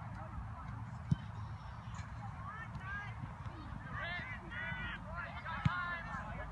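A flock of geese honking, the calls coming thicker from about halfway on. Two sharp thumps of a soccer ball being kicked stand out, about a second in and near the end.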